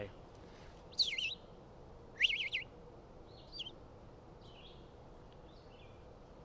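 Red-eyed vireo singing: short, slurred whistled phrases with pauses between them, three clear ones in the first few seconds followed by a few fainter notes.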